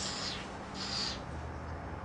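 Two short sniffs, each under a second, in the first half: a person nosing wine in a glass.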